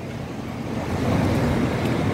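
Low rumbling outdoor background noise with no clear single source, a little louder from about a second in.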